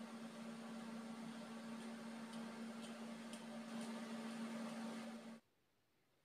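A steady machine hum over a faint hiss, with a few faint light clicks; it cuts off suddenly about five and a half seconds in.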